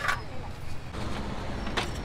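Roadside street ambience: a steady low traffic rumble, with a couple of short clicks from the serving utensils against the metal biryani pot.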